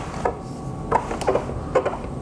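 A Creality CR-10 SE 3D printer being turned around by hand on a wooden workbench: its base rubbing and scraping on the bench top, with a few light knocks and clicks.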